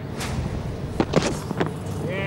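Cricket ground ambience picked up by the broadcast's field microphones: a steady noise bed with a few short clicks and a brief faint voice fragment.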